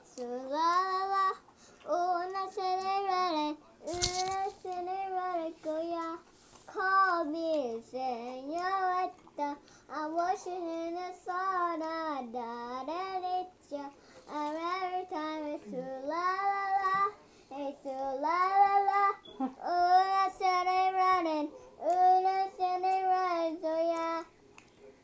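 A young girl singing a song unaccompanied, in held, gliding phrases of a second or two with short breaths between them. A single sharp click sounds about four seconds in.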